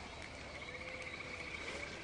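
Faint outdoor wildlife ambience: a steady rhythmic chirring that pulses several times a second.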